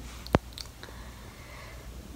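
A single sharp click about a third of a second in, over a low steady hum of room noise.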